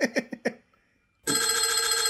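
A bell ringing in a fast, even trill, in the manner of an old telephone bell, starts a little over a second in, after laughter fades out.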